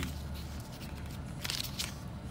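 Pages of a paper service logbook being flipped by hand, with a few crisp paper flicks and rustles, the clearest about one and a half seconds in and again just after.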